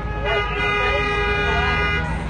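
A vehicle horn held in one steady blast of about two seconds, cutting off near the end, over street traffic rumble.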